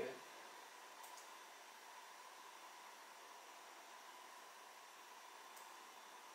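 Near silence: faint room hiss with a thin steady high hum, and two faint computer mouse clicks, about a second in and near the end.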